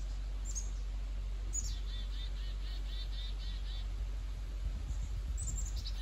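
A small songbird singing in the forest: a high falling note that runs into a quick trill of repeated notes, heard about a second and a half in and again near the end, with a faint chirp before. A steady low outdoor rumble lies under it.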